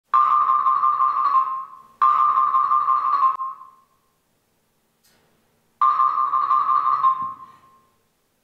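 A struck metal percussion instrument ringing out three times, a single high ping-like note each time that starts sharply and fades away over about two seconds, with a faint pulsing in the tone.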